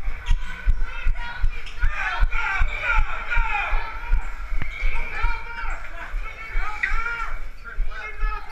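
Running footsteps on a concrete floor, heard as a steady run of dull thuds through a body-worn camera. Over them come high voices yelling and calling out, without clear words.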